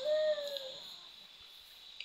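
A woman's short closed-mouth hum, one held, slightly arching tone lasting under a second, fading into quiet room tone.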